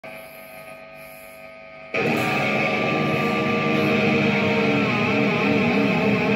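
Stratocaster-style electric guitar through an amplifier: a low mains hum for about two seconds, then loud sustained guitar music comes in suddenly, with wavering, bending notes toward the end.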